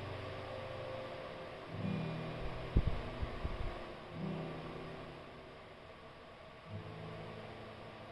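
Acoustic guitar played slowly between sung lines: a new chord about every two and a half seconds, each left to ring and fade. A few low thumps a little under three seconds in.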